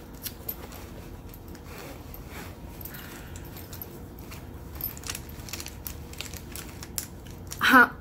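Hands rummaging through a small zippered fabric pouch, giving a soft rustle with scattered light clicks and taps from its contents.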